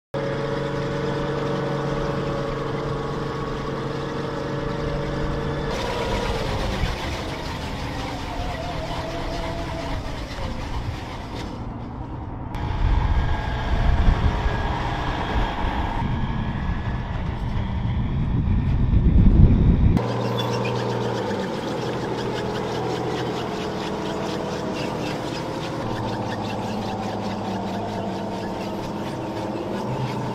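Engines of tracked M113 armored personnel carriers and a semi truck running in a string of shots, the sound changing abruptly several times. The middle stretch is louder and deeper, and over the last third a fast clatter runs over a steady engine hum.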